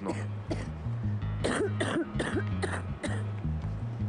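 A woman coughing repeatedly in short harsh bursts, a chesty cough from a lung infection that antibiotics have not cleared, over background music with a steady low bass line.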